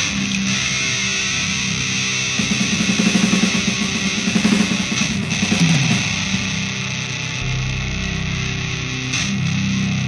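Heavy metal band playing live: distorted electric guitars holding ringing chords, with a rapid low figure in the middle and a deeper bass low end coming in near the end.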